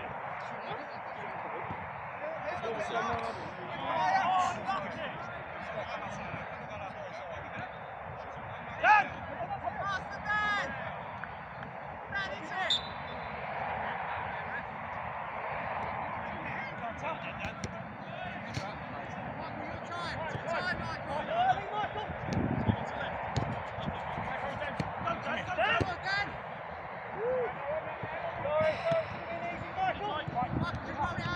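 Indistinct shouts and calls from footballers across the pitch over steady outdoor background noise, with a few sharp thuds of the ball being kicked, the loudest about nine seconds in.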